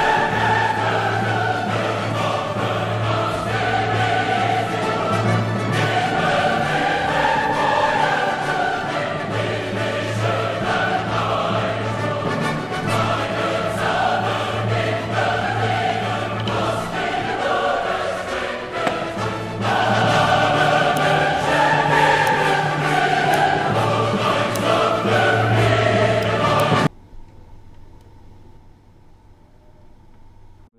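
Choral music with voices singing slow, swelling lines over a steady low note, cutting off abruptly near the end.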